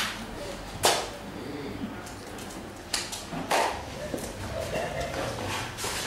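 Indistinct voices in a classroom over steady room noise, broken by several sharp knocks. The loudest come about a second in and midway.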